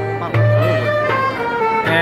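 Live acoustic folk band playing a Turkish folk tune: violin and flute carrying the melody over strummed acoustic guitar and a held low note.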